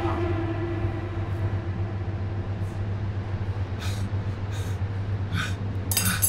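A steady low hum with a ringing note dying away over the first two seconds, then a few short, sharp breaths spaced about a second apart.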